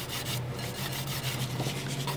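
Hand nail file rasping in quick back-and-forth strokes against the side of a cured gel nail during final shaping.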